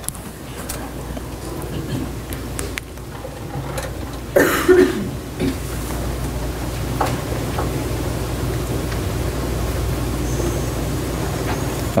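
A single cough about four seconds in, over steady room noise with a low hum that slowly grows louder and a few faint clicks.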